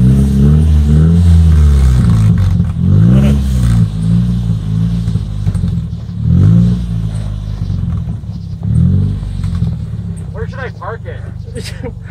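Engine of a half-cut car, the front half of a car rolling on a caster dolly, running and revving up and down several times as it drives slowly.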